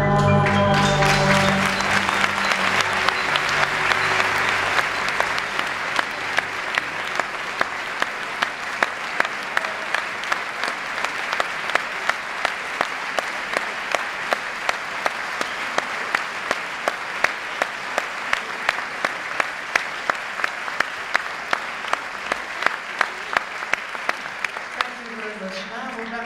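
Concert audience applauding after the last chord of an orchestral piece with piano, which fades out about a second in. Sharp claps from someone close by stand out at about three a second, and the applause dies away near the end.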